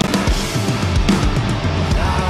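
Progressive metal song from a drum playthrough: a live drum kit with kick-drum and cymbal hits over heavy distorted guitars and bass.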